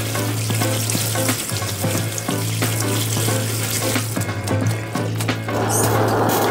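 Tap water running into a stainless steel sink and over bamboo shoots in a metal mesh strainer as they are rinsed by hand; the water cuts off near the end. Background music plays underneath.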